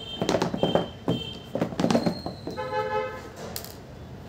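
A cardboard phone box being handled on a table: a run of knocks and rubs in the first two seconds. About three seconds in, a short pitched tone sounds in the background.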